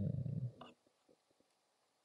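A man's low, closed-mouth hummed "mm-hmm" trails off in the first second, followed by a few faint, short clicks.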